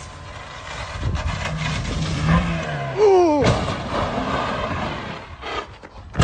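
A car's engine revving and its tyres skidding as the car slides sideways through a bend, with a sharp falling tone about three seconds in.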